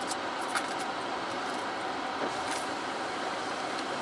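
Steady hiss of the car's cabin while it creeps forward at low speed, with a few faint clicks.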